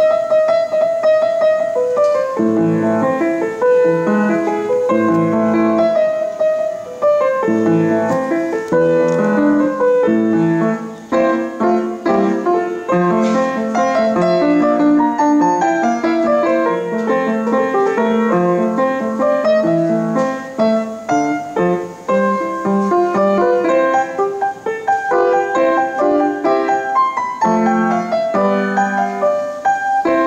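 Grand piano played solo: a continuous piece with a melody in the upper notes over lower accompanying notes.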